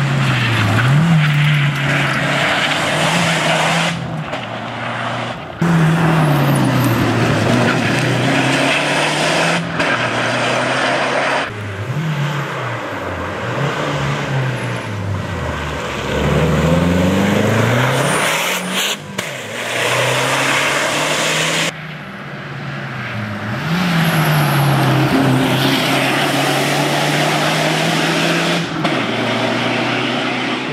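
Lancia Delta HPE rally car driven hard on a stage: the engine revs climb through each gear and fall back at every shift, over several passes joined by abrupt cuts.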